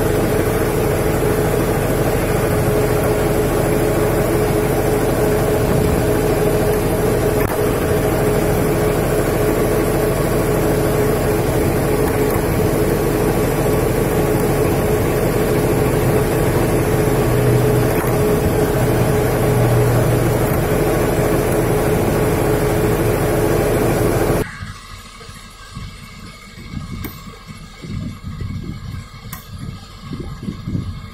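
Steady, loud drone of running machinery with a strong, even hum, which cuts off abruptly about 24 seconds in, leaving a quiet background with a few light knocks.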